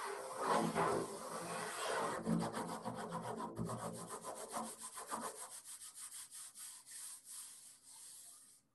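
Fingers rubbing across the head of a large hand-held frame drum. A few broad sweeps come first; about two seconds in they turn into a fast run of short strokes that slowly spread out and fade near the end.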